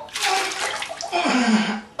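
Two loud gushing, splashing bursts of water from a toilet bowl, the second ending in a low falling groan.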